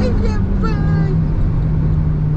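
Mitsubishi Colt CZT's turbocharged 1.5-litre four-cylinder engine pulling hard in third gear, heard from inside the cabin. Its steady note steps down slightly just over half a second in.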